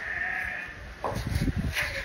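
A farm animal bleating once, a short wavering call in the first half-second or so, followed by a brief falling sound about a second in.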